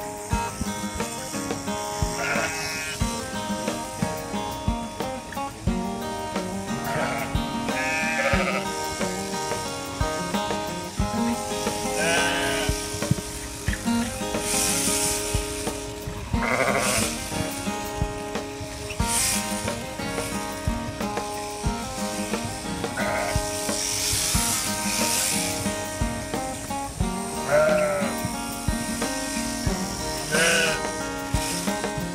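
Sheep bleating several times, wavering calls spaced a few seconds apart, over background music.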